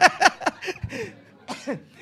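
A man chuckling in a few short bursts over the first second, with one more burst near the end.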